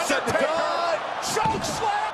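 A few sharp hits from blows in a wrestling match, set against excited shouting commentary and crowd noise.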